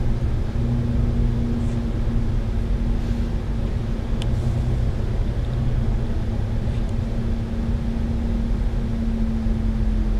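Double-decker bus cruising on a highway, heard from inside the upper deck: a steady engine drone with a constant hum and a low road rumble.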